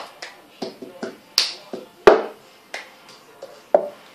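Cup song played slowly: hand claps mixed with a plastic cup being knocked and set down on a tabletop, about eleven separate sharp claps and knocks with short gaps between them, the loudest about two seconds in.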